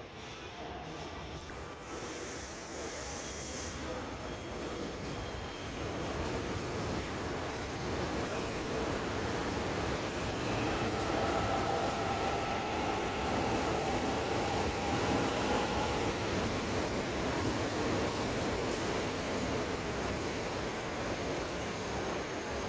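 Korail Class 351000 electric multiple unit pulling into the platform: the rumble of wheels and motors grows louder as the cars roll past, then holds steady. A faint whine sounds for a few seconds around the middle.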